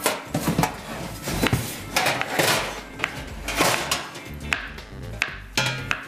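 Kitchen knife slicing food and knocking on a cutting board in irregular strokes, over background music.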